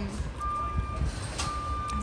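A lorry's reversing alarm beeping, one steady high-pitched beep about once a second, over a continuous low rumble.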